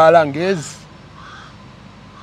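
A man's voice for the first half-second, then two faint, harsh bird calls in the background about a second apart.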